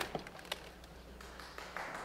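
A few sharp taps and knocks on a wooden pulpit close to its microphone, the first right at the start and another about half a second in, as things on it are handled, over a faint steady low hum.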